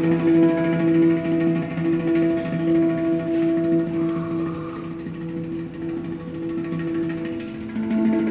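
Steel handpan played by hand: a chord of ringing notes held on and slowly dying away, growing quieter toward the end.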